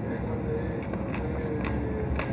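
Steady low background rumble, with a few faint clicks from a man licking his fingers and chewing chicken.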